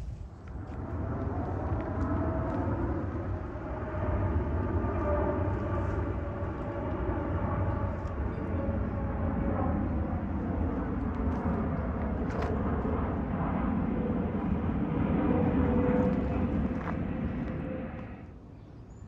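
Jet airliner flying low overhead: a loud, steady rumble with several whining tones that slowly sink and then rise again, loudest near the end.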